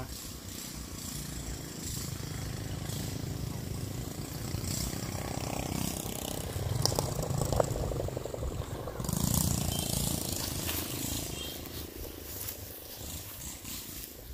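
Kubota combine harvester's diesel engine running as it works through the rice, a steady low rumble with a fast, even pulse that grows louder in the middle.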